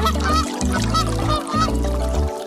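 A rapid string of short duck-like quacks, about four a second, from a cartoon duckling, over children's background music with a steady bass line.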